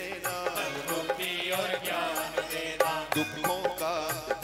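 Hindu devotional hymn to the Goddess, sung by a group of men into microphones with electronic keyboard accompaniment and a steady beat of about three strokes a second.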